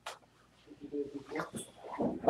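A faint person's voice starting about a third of the way in, after a short click at the start.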